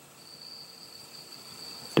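Faint steady hiss with a thin high-pitched whine from a lighter flame burning, held to the end of a fiber optic sight rod to melt it.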